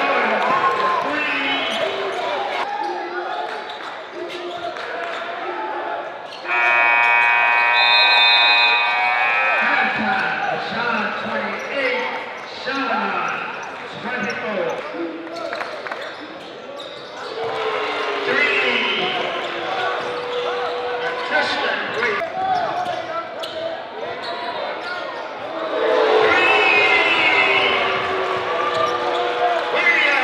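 Live high school basketball game sound in a gymnasium: a basketball bouncing on the hardwood floor amid players' and crowd voices. About six seconds in, a steady horn sounds for roughly three seconds.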